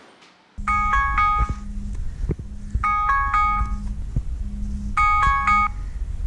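Smartphone alarm ringing: a short chiming melody repeated three times about two seconds apart, with a low buzzing underneath.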